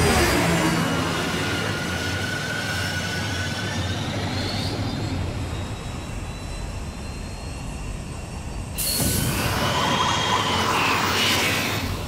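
Animated sound effect of a futuristic F-Zero race machine's jet-like engine at speed: a loud rush with thin whining tones that glide in pitch. About nine seconds in it turns abruptly louder and brighter, a hissing rush of speed.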